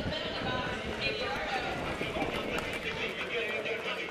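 Quad roller skate wheels clattering and striding on a hard gym floor as a pack of skaters jostles, with many voices shouting and talking over it.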